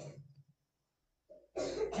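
A person coughing, a loud rough burst about a second and a half in that leads straight into speech; a short fainter noise at the very start.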